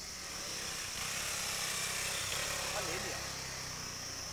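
Steady engine and road noise from a vehicle driving along, growing a little louder about a second in.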